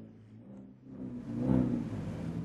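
Sports car engine running low, swelling up about halfway through as the car pulls along.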